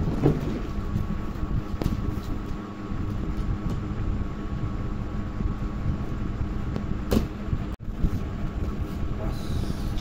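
Cardboard shipping box being handled and its plastic packing strap pulled off, with a few sharp clicks and scrapes over a steady low rumble and hum.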